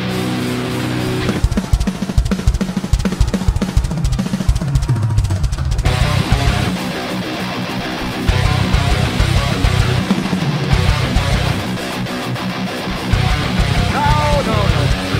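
Metalcore band playing live: distorted electric guitars and a drum kit. A held chord rings at first, then about a second and a half in it breaks into a rapid stop-start low riff driven by the kick drums, and the full band comes in fuller about six seconds in.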